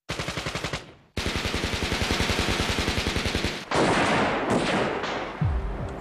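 Automatic gunfire: a short burst of rapid shots, then a longer even burst at about nine rounds a second, followed by two rougher blasts that fade away.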